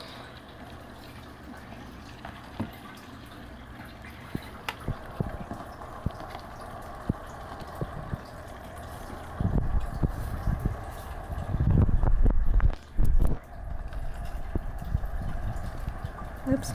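Steady background hum with scattered light clicks, then a few seconds of loud, low rustling and bumping close to the microphone about ten seconds in.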